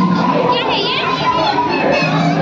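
Crowd of children shouting and chattering, many overlapping high voices at once.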